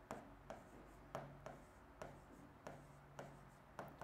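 Faint plastic taps and light scratches of a stylus writing digits on an interactive whiteboard's screen, a short tick with each stroke, about a dozen in all and unevenly spaced. A faint steady low hum sits underneath.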